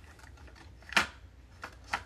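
Hollow plastic Mini Brands capsule halves clicking against each other as they are handled: one sharp click about a second in, then two lighter clicks near the end.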